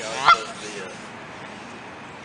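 A Canada goose gives a single loud, short honk that rises in pitch, about a quarter second in.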